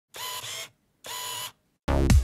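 Two half-second camera shutter-and-winder sound effects, about a second apart. Loud dance music starts just before the end.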